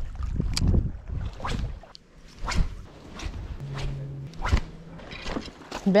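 Wind buffeting the microphone, strongest in the first couple of seconds, with several short knocks and a brief low hum a little past the middle.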